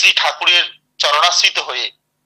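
A man speaking, in two short phrases with a brief pause between them.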